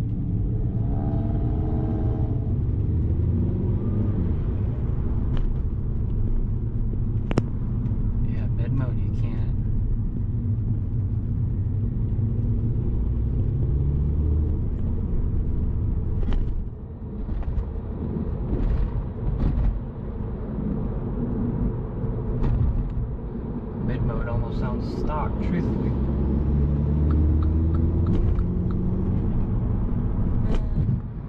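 Mini Cooper S (F56) turbocharged four-cylinder engine with an aFe Power Magnum Force Stage-2 cold air intake, running while the car is driven in traffic in its mid drive mode. The level dips briefly about halfway through, and the engine note rises under acceleration near the end.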